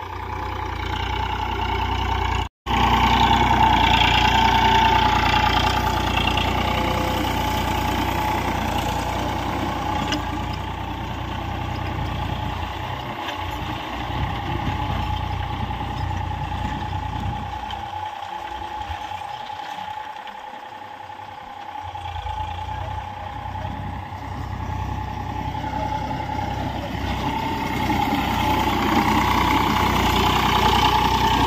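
Eicher 485 tractor's diesel engine running steadily under load while it drives a rotavator through the soil. The sound cuts out for an instant about two and a half seconds in. It grows fainter and thinner in the middle as the tractor pulls away, then louder again near the end as it comes close.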